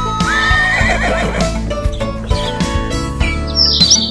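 Horse neigh sound effect, one wavering whinny lasting about a second, over children's song backing music.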